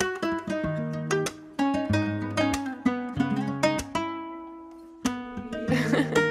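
Instrumental hip-hop beat in G# minor at 95 BPM, led by a plucked guitar melody whose notes ring out and fade over a low bass line. A short noisy swell comes in just before the end.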